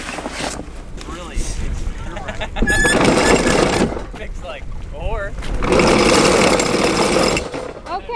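Anchor chain paying out over the bow, rattling in two bursts of a second or two each, the second about two seconds after the first, as more chain is let out between the floats.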